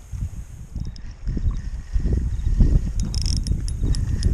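Spinning reel being cranked against a fighting fish, with a quick run of sharp clicks about three seconds in, over a low rumble.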